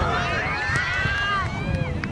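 Several voices shouting at once at a soccer match, with long drawn-out calls that rise and fall in pitch.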